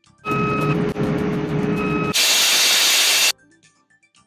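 Loud ship's engine-room machinery noise, a steady drone with a whine over it, giving way about two seconds in to an even louder hiss that lasts about a second and cuts off suddenly.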